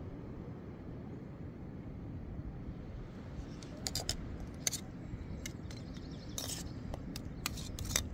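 A long metal spoon clinking and scraping against an aluminium camp pot as vegetables are stirred, with a cluster of sharp clinks from about halfway and the pot set back onto a small canister stove near the end. Under it is a steady low rumble.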